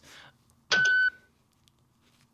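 A short electronic beep: one steady, high tone lasting under half a second, about a second in.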